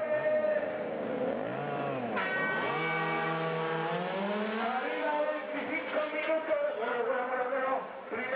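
A pack of radio-controlled Mini Cooper 4WD model race cars running flat out past the camera, the pitch of several motors rising and falling as the cars accelerate and brake, with one climbing sharply about two seconds in.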